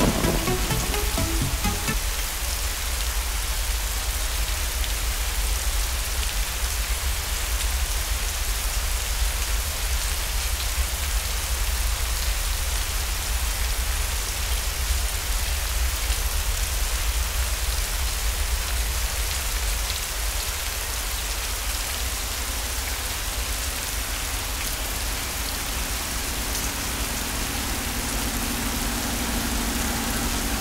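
Steady rain pouring down, an even hiss with a constant low rumble beneath it. A faint low hum joins near the end.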